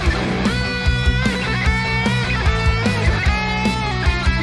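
Playback of an 80s-style rock instrumental section in B minor: a steady drum beat, bass and electric guitars, with a sustained lead line on top that bends and glides in pitch.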